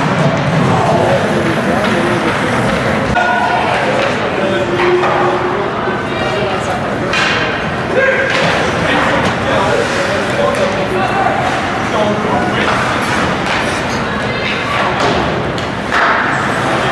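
Ice hockey game in play in an indoor rink: voices of players and spectators throughout, with several thuds of pucks, sticks or bodies against the boards, the clearest about seven to eight seconds in.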